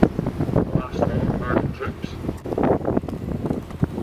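Wind buffeting the microphone over a low rumble on a moving boat, with indistinct voices.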